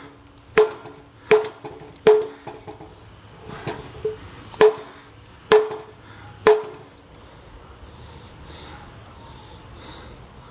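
Cold Steel Demko Hawk chopping into a wooden beam: about eight sharp chops, roughly one a second, each with a short ring. The chopping stops about seven seconds in.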